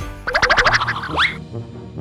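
A comic cartoon-style sound effect over background music: a quick run of fluttering pulses, followed about a second in by a couple of rising, whistle-like glides.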